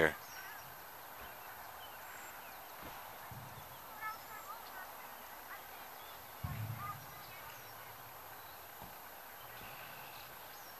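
Quiet open-air ambience with faint, scattered bird chirps, and two short low thumps, about three and six and a half seconds in.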